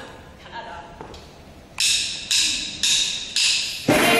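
Tambourine struck four times, about half a second apart, each strike a bright jingle that dies away. A louder burst of music starts just at the end.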